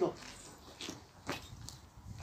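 Footsteps of leather shoes on paving stones: a few separate steps, about half a second apart, in the second half.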